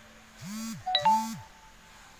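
An electronic alert: two short buzzes about half a second apart, with a bright chime between them that rings on briefly, typical of a phone notification going off close to the microphone.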